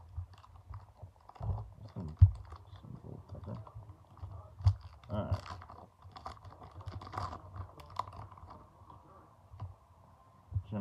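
Baseball card pack wrapper crinkling and tearing open, with packs and cards shuffled in the hands in a run of irregular clicks and crackles. A few dull knocks from the handling stand out, the loudest about two seconds in and near the five-second mark.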